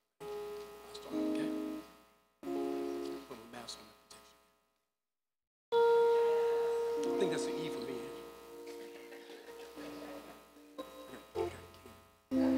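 Electronic keyboard playing a few short phrases of held notes, each broken off by silence, then a longer, louder held chord from about six seconds in: the accompanist feeling out a singer's starting note.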